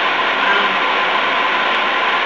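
A steady hiss of background noise with a faint steady whine in it, and a brief hesitant "um" from a speaker.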